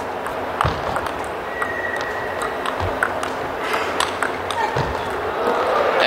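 Table tennis ball clicking off the rackets and the table in a rally: a series of sharp, irregularly spaced knocks over the steady background noise of the hall.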